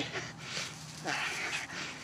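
Small old dog panting, tired after a walk, with a hand rubbing its fur close by.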